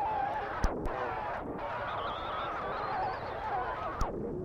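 Garbled, warbling sound from a badly damaged videotape, a noisy wash with wavering tones through it and a sharp click under a second in.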